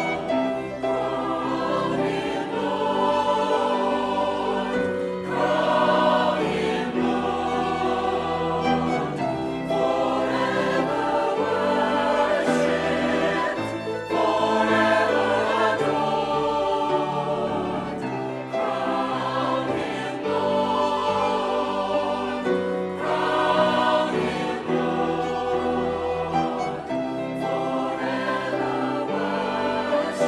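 A church choir singing a hymn with violin accompaniment, the words 'Crown Him Lord! Crown Him Lord!' and then 'Forever worshiped, forever adored!'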